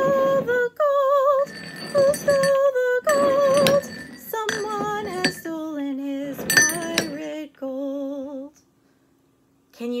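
A woman singing a children's song unaccompanied, held notes with vibrato, while ceramic coffee mugs knock and clink as she slides them around on a table. The singing stops about eight and a half seconds in.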